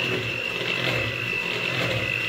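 Electric hand mixer running steadily with a constant high whine, its beaters churning thick cake batter in a bowl.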